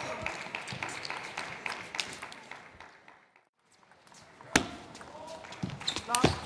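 Table tennis rally: rapid sharp clicks of the ball striking bats and table, with short squeaks of shoes on the court floor. The sound cuts out briefly a little past the middle, then another exchange of clicks begins.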